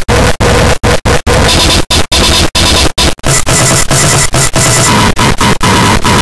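Heavily distorted, clipped audio of a 'Preview 2' effects edit: loud, harsh noise with faint music under it, cut by many brief dropouts, several a second.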